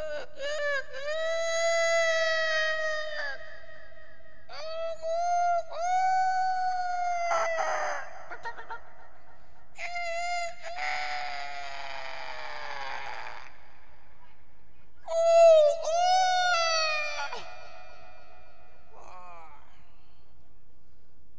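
A rooster crowing four times, each crow about three seconds long, the last and loudest about fifteen seconds in.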